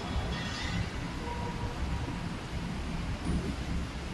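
Steady low rumble of an empty-can depalletizer and its conveyor belt running, with a brief hiss about half a second in.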